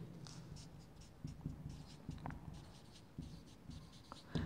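Felt-tip marker on a whiteboard, faint irregular strokes as a word is written by hand.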